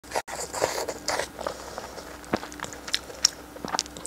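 Close-miked biting and chewing of soft braised offal in sauce: a string of short wet mouth clicks and smacks.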